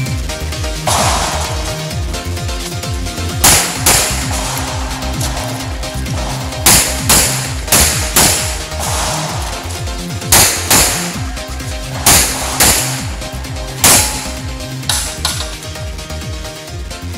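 Pistol shots fired in quick pairs, about half a second apart, roughly a dozen in all, each sharp and far louder than anything else, over electronic dance music with a steady beat.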